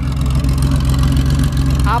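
Classic Porsche 911's air-cooled flat-six (boxer) idling steadily, heard up close at the tailpipe through an unbelievably loud exhaust.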